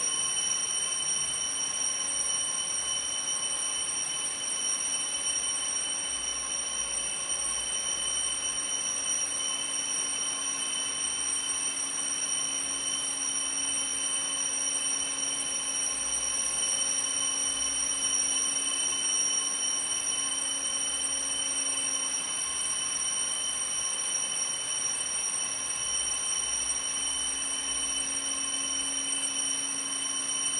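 A steady, unbroken electronic tone sounding several pitches at once. It starts suddenly and holds without wavering or fading, then cuts off at the end.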